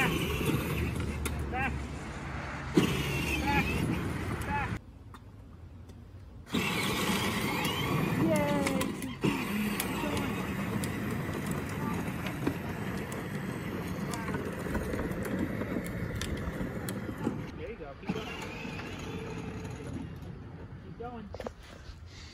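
Battery-powered Power Wheels Corvette ride-on toy driving over an asphalt driveway: a steady rumble of its hard plastic wheels rolling, with a short lull about five seconds in and a young child's voice over it.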